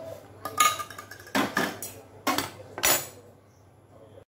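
Cutlery and dishes clinking together in a few short clatters spread over about three seconds, as food is handled or served.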